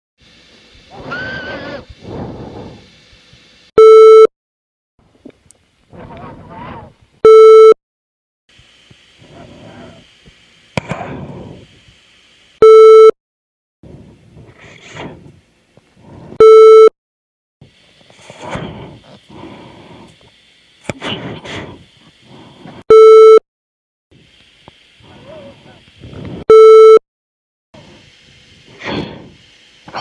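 Six loud, buzzy electronic beeps, each about half a second long and coming every few seconds at uneven gaps. Indistinct muffled voices and hiss run between the beeps. The uploader presents the recording as electronic harassment.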